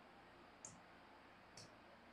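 Two faint clicks about a second apart, over near silence: a stylus tapping the glass of an interactive touchscreen board as it writes.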